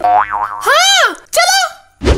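Three quick, high-pitched cartoon sounds, each swooping up and down in pitch: the first dips and rises, the second arches up then falls, and a shorter third follows.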